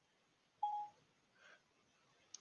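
A single short electronic beep: one steady mid-pitched tone lasting about a third of a second, a little over half a second in.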